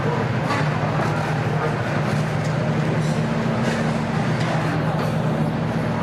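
Steady low drone of racing car engines idling, with faint voices underneath.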